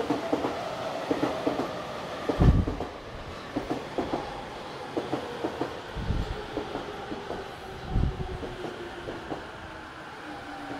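JR E231-500 series electric commuter train pulling into the platform and slowing: its wheels clack over the rail joints while a faint motor whine slowly falls in pitch. Three deep thumps come about two and a half, six and eight seconds in.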